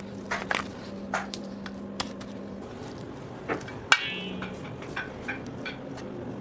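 A spatula folding and scraping thick chocolate spread with cookie crumbs in a stainless steel bowl, giving scattered clicks and squelches. About four seconds in comes a sharper knock of utensil on metal, with a brief ring.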